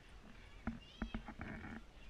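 Footsteps knocking on the wooden log rungs of a chain-hung bridge, a few quick knocks about a second in, with a short high squeak among them.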